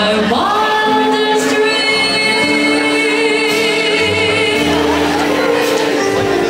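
Live jazz music: one long note slides up at the start and is held for several seconds, with vibrato coming in about two seconds in, over sustained accompanying tones.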